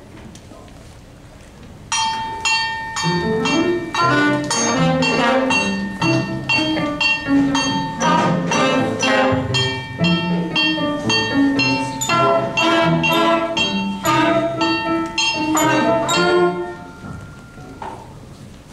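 Student band of trombone, trumpet and saxophone playing a short instrumental passage of quick, separate notes. It starts about two seconds in and stops about a second and a half before the end.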